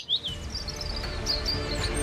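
Small birds chirping over quiet street ambience, with low music fading in and growing louder toward the end.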